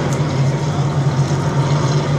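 A pack of race cars' engines running together in a steady low drone as the field circles the track.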